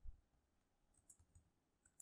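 Faint, scattered computer keyboard clicks, a few keystrokes at a low level in otherwise near silence.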